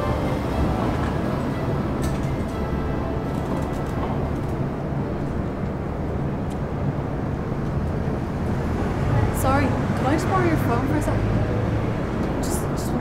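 Busy city street ambience: a steady hum of traffic and people, with a trailing end of music right at the start. Brief, indistinct wavering voices rise above it near the end.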